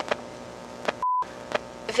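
A single short, high, pure electronic beep about a second in, with the background hiss cutting out around it. A faint hiss with scattered sharp clicks, like old-film crackle, runs under it.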